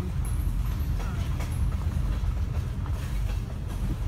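Slow-moving freight train: a steady low rumble of rolling railcars, with scattered clicks of wheels over the rail joints and a couple of brief faint high squeaks.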